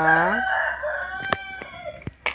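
A man's drawn-out spoken count trails off with a rise in pitch in the first half second. Then come two sharp clicks about a second and a half in, as small pieces are dropped into a cardboard box.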